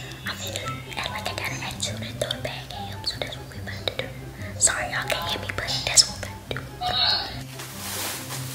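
A woman whispering over background music that has a repeating low bass line.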